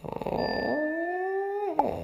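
Drawn-out cartoon cat yowl from an animated logo sting. It rises in pitch, holds for about a second, then drops off sharply near the end.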